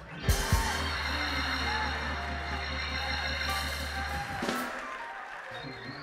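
Church music backing a preacher's pause: held organ chords over a steady pulse, with a low held bass note that stops about four seconds in.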